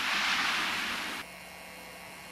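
A steady rushing noise that cuts off abruptly a little over a second in, giving way to much quieter room tone with a faint low hum.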